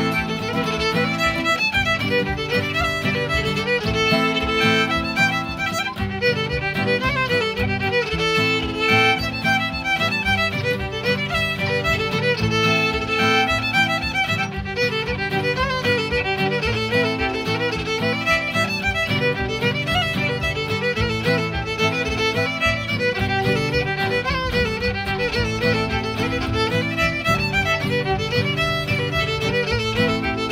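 Fiddle playing a Celtic tune over strummed acoustic guitar chords, the melody moving in quick notes above a steady rhythm.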